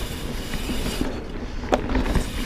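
Mountain bike rolling fast down a dirt singletrack: Schwalbe Nobby Nic knobby tyres giving a steady low rumble on the ground, with small ticks and rattles from the bike and one sharp click near the end.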